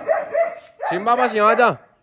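A dog whining at a high, steady pitch for most of a second, then a louder, longer call that rises and falls in pitch.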